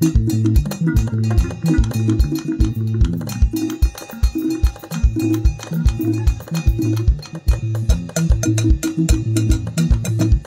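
Live band playing an upbeat instrumental groove: drum kit with a steady kick drum of about three beats a second, a walking electric bass line, and keyboard chords, with no voice.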